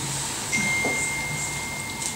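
Room tone of a small hall, with a thin, steady high whistle that starts about half a second in and holds at one pitch.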